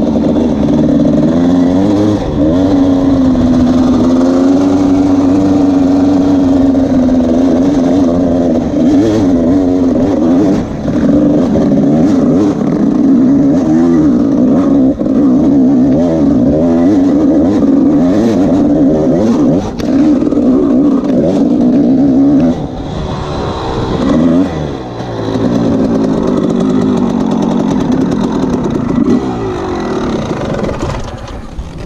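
Dirt bike engine running under throttle on a rough trail, its pitch rising and falling as the rider works the throttle. About three-quarters of the way in it drops back and gives one quick rev, then runs quieter.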